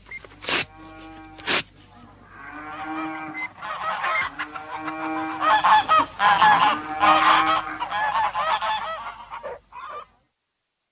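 Two short rips near the start, then a flock of geese honking and cackling, several calls overlapping and growing busier toward the end.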